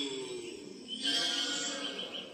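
A voice making drawn-out, sliding, breathy vocal sounds, twice, with no clear words.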